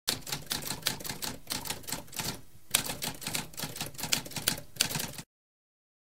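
Typewriter keys typing in a rapid run of clicks, with a brief pause about halfway, stopping a little after five seconds in.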